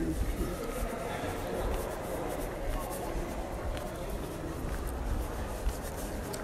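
Faint, indistinct voices over a steady low rumble of room noise in a large hall.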